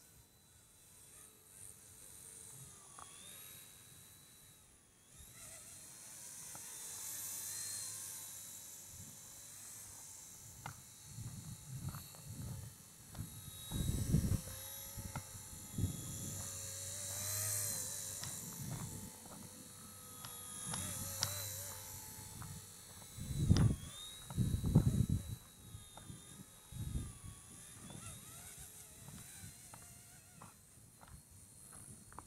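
RC model Bell 206 helicopter flying and hovering, a high-pitched motor and rotor whine that wavers up and down in pitch as the throttle changes. Low rumbling gusts, likely rotor downwash or wind on the microphone, come in the second half and are loudest about two thirds of the way through.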